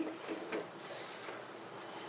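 A cross-head bathroom tap being turned on, with water starting to run faintly into the sink.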